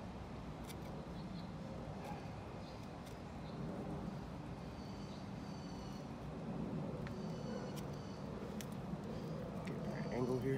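Outdoor background: a steady low hum with faint, short high-pitched tones recurring throughout, and a few light clicks scattered through it.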